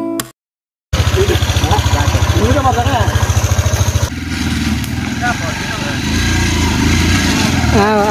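Dirt bike engine running with a rapid, even beat after a short silence. It continues steadier after a cut about four seconds in, with voices talking over it.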